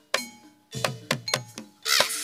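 Javanese gamelan accompaniment for a jathilan dance: sharp drum and ringing metal strikes, a brief pause about half a second in, then a quicker run of strikes.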